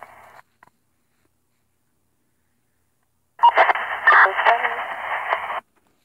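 Fire dispatch radio voice traffic over narrowband FM from the speaker of a Uniden BCD436HP handheld scanner, thin and tinny. One transmission ends just after the start, the squelch holds the audio completely silent for about three seconds, and another short transmission comes in about three and a half seconds in and cuts off about two seconds later.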